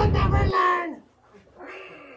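The rumbling tail of a cartoon explosion sound effect cuts off abruptly about half a second in. Over it comes a drawn-out cry that falls in pitch, followed by a fainter cry.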